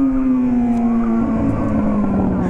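Yamaha XJ6's inline-four engine, heard from the rider's seat, its note dropping steadily as the revs fall while the bike rolls along.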